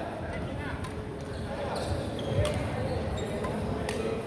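Sports-hall badminton sounds: sneakers squeaking on a wooden court, several sharp racket-on-shuttlecock hits from nearby courts, and voices in the background.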